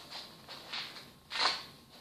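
Faint rustling and handling noise as a plastic toy championship belt is wrapped around a waist and fastened, with one louder brief rustle about one and a half seconds in.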